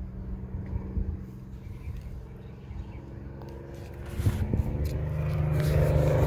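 A steady low engine drone, growing louder from about four seconds in, with a few faint clicks.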